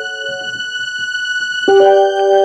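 A keyboard with a piano-like sound: a held chord slowly dies away, and a new chord is struck near the end.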